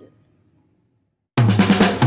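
Dead silence for about the first second and a half, then background music cuts in suddenly with a rapid run of drum strikes.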